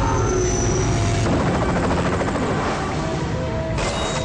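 Film-trailer soundtrack: dramatic music mixed with a loud, fast, steady throbbing effect like a helicopter's rotor, thickest from about a second in until near the end.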